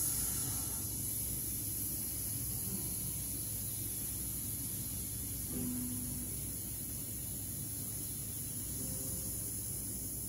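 A person exhaling on a long, steady hissed "sss" for about ten seconds, a singer's breath-support exercise: the breath is paced out evenly on the hiss against the expanded stomach muscles and diaphragm.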